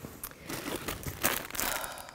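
Clear plastic packaging around a pack of yarn skeins crinkling as it is handled and pulled out of a box, with dense crackles that grow louder in the second half.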